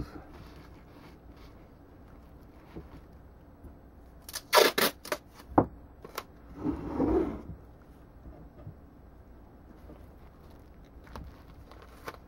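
Short pieces of tape being torn and pressed onto plastic wrap. A quick cluster of sharp rips comes about four seconds in, then a single snap, then a rustle lasting about a second.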